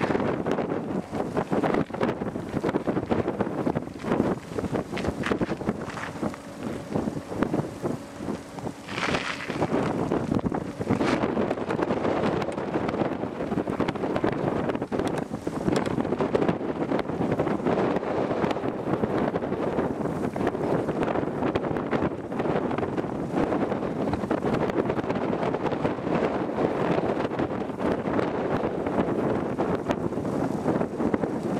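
Strong, gusty wind rushing and buffeting the microphone, with a sharper gust about nine seconds in.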